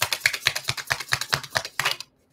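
A deck of oracle cards being shuffled by hand: a rapid run of crisp card snaps, about ten a second, that stops suddenly at the end.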